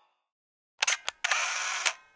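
Camera shutter sound effect: two quick clicks a little under a second in, then a half-second mechanical rasp that ends in a sharp click.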